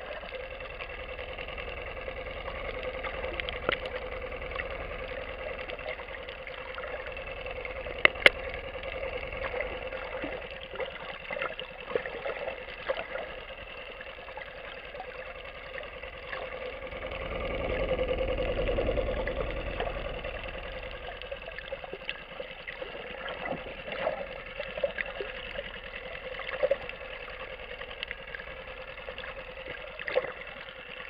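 Underwater drone of a distant motorboat engine, a steady hum that swells louder for a few seconds past the middle and then fades back, with scattered small clicks and crackles and two sharp clicks about eight seconds in.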